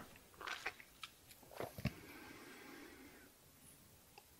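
Near silence with a few faint mouth clicks from a man pausing between spoken phrases, in the first two seconds, then a soft faint noise.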